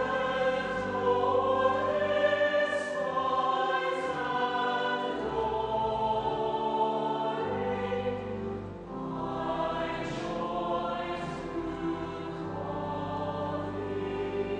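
A choir singing a slow piece in long, held chords.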